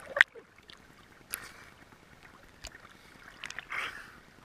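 Sea water splashing and lapping against a camera held at the waterline as it dips in and out of the surface: a loud sharp splash just after the start, then short splashes and gurgles about every second or so.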